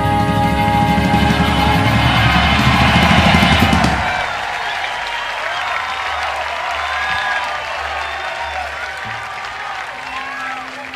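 A rock band's song ending live, with electric guitar on a held final chord that cuts off about four seconds in. A large crowd then cheers and applauds.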